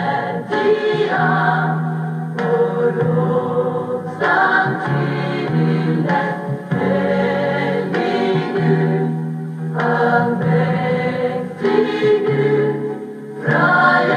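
Mixed vocal group singing a Norwegian worship song in harmony, in long phrases, over piano accompaniment, heard through a television's speaker.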